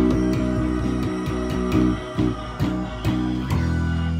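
Four-string electric bass guitar playing a quick run of plucked notes, then one low note left ringing near the end.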